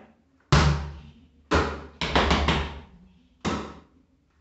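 A soccer ball is bounced once on a hard floor and caught with a thud. Then come four quick foot stomps and a final slap about three and a half seconds in. Together they make a ball-and-body-percussion rhythm of sharp separate hits.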